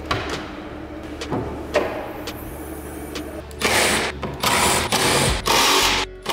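Cordless power driver running in several short, loud bursts during the second half, backing out the T25 bolts along the top of a Mk6 VW Golf's front grille. Before that there is a low steady hum with a few light clicks.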